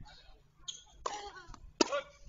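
Two short, forceful vocal bursts from a person, about a second in and near the end. The second is the louder and starts with a sharp crack.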